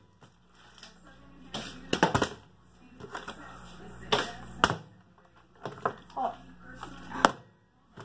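A few sharp knocks and taps of a plastic water bottle being handled and set down on a kitchen countertop, spread out with quiet gaps between them.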